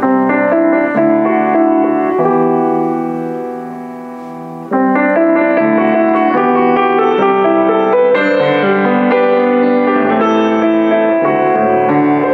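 Boston GP-156 baby grand piano played in a chordal passage; about two and a half seconds in a chord is held and dies away, then playing resumes loudly about five seconds in.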